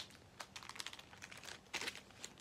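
Clear plastic outer sleeve of a vinyl LP crinkling as the record is picked up and handled: a string of light crackles with a louder burst near the end.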